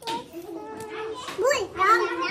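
Children's high-pitched voices talking and calling out, several overlapping, with rises and falls in pitch.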